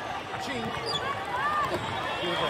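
Busy volleyball-hall background: several young players' voices calling out in short rising and falling shouts over general crowd noise, with a few faint ball bounces on the sport-court floor.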